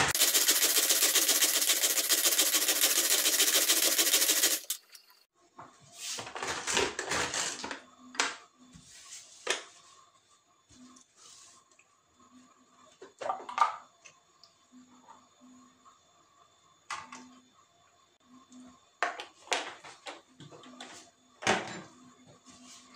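A manual pull-cord food chopper whirs and rattles fast as its cord is pulled over and over, blending milk and oil. It stops suddenly about four and a half seconds in. Scattered light plastic clicks and knocks follow while the chopper is handled and opened.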